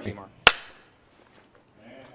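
A voice trailing off, then a single sharp knock about half a second in.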